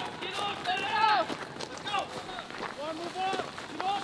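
Men shouting commands and calls over one another, with a few faint clicks in between.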